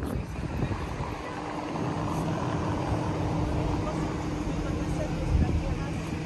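A motor vehicle's engine running close by, with a steady low hum.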